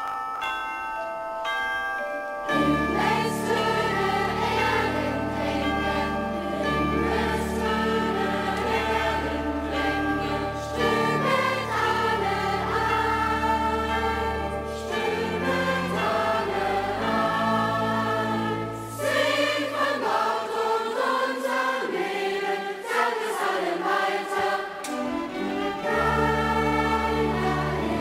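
Large children's choir singing with orchestra and band accompaniment. A few held instrumental notes open it, and the full ensemble with a bass line comes in about two and a half seconds in.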